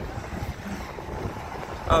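Steady low rumble of outdoor ambience on a highway bridge: road traffic and wind on the microphone. A man's voice begins right at the end.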